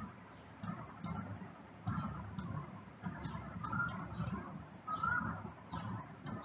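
Stylus tapping and writing on a digital pen tablet: light, irregularly spaced clicks as each handwritten stroke begins and ends, with a soft dull rub of the pen tip between them.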